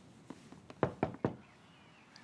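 Three quick knocks on a door, evenly spaced, asking to be let in.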